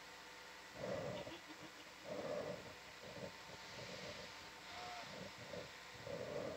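Faint, muffled human voices in short uneven bursts, too indistinct to make out words, over a faint steady electrical hum.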